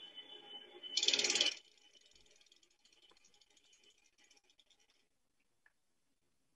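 A short rattling noise about a second in, lasting about half a second, followed by near silence.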